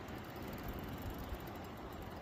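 Steady faint background hiss and low rumble with no distinct event standing out.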